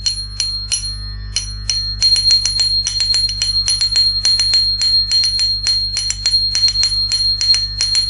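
Small hand cymbals (nattuvangam talam) struck in a quick, uneven Bharatanatyam rhythm pattern, each strike ringing on over a steady high metallic tone, with a low hum beneath.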